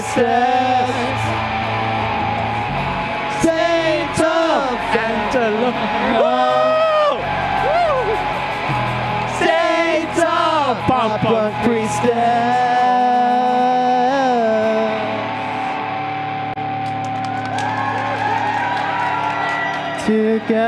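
Live band with electric guitars and keyboard playing under sung and shouted vocals, settling into a long sustained chord over the last few seconds.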